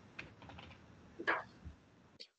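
Typing on a computer keyboard: a few light key clicks, with one louder short sound a little past the middle.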